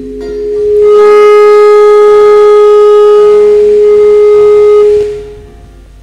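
One long, loud held musical note at a single steady pitch, swelling in over the first second and stopping abruptly about five seconds in, followed by quieter music.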